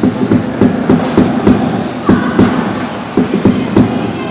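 Footsteps thumping on a hollow wooden platform: a rapid, uneven run of dull knocks, about four or five a second.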